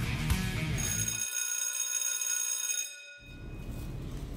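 Rock guitar music stops about a second in. A high, bell-like ringing follows for about two seconds and then cuts off, leaving quiet room tone.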